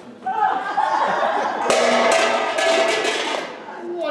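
Voices exclaiming with laughter, loudest and most crowded from about two seconds in to about three and a half seconds, then easing off.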